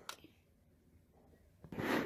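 Mostly quiet room with a short click at the start, then a quick breath drawn in near the end.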